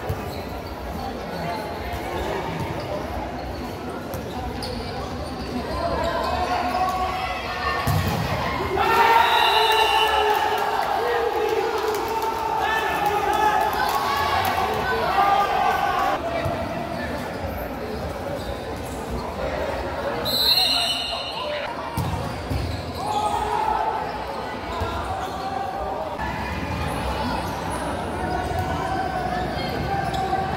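Indoor futsal play on a hard court: the ball thuds off feet and the floor now and then, while players' voices call out across an echoing gym hall.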